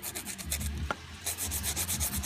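Hand nail file rubbing across hardened dipping-powder acrylic nails in quick back-and-forth strokes, shaping the dried coat square with rounded corners.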